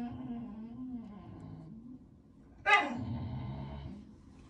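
Two drawn-out vocal calls, each falling in pitch; the second starts suddenly, louder, near the end.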